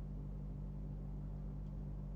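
Steady low hum with a faint, even hiss underneath: the recording's background noise, with no other sound.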